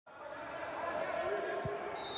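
Indistinct voices of players and spectators on an indoor futsal court, with one dull thud of the ball on the court about one and a half seconds in.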